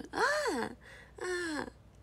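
A young woman's voice making two drawn-out 'aah' calls, the first arching up and then down in pitch, the second dipping and rising at its end: playful babble-talk echoing a nephew's 'aah'.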